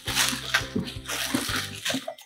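Plastic candy wrappers crinkling and rustling in irregular crackles as handfuls of wrapped sweets are pulled from a cardboard box, over background music.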